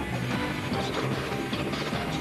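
Live rock band playing loudly, with frequent sharp drum and cymbal strikes over steady bass notes.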